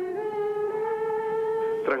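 A group of women singing one long held note together, the pitch stepping up slightly just after the start and then held steady.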